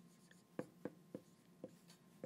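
Dry-erase marker writing on a whiteboard: quiet, short strokes, about five in two seconds, as letters are drawn.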